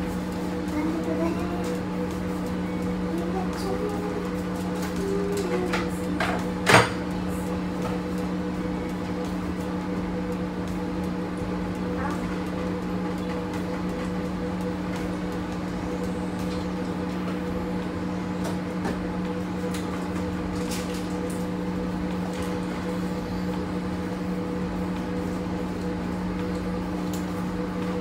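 Steady low electrical hum of a room appliance, with one sharp knock about seven seconds in.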